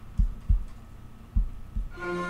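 Four dull, low thumps at uneven intervals, like knocks or bumps against a desk or the microphone as someone moves at a computer.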